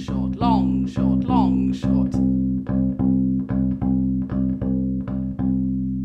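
Cheap fretted bass ukulele, plucked in a swing rhythm of long-short pairs on a repeated low note, with a voice sounding along over the first couple of seconds.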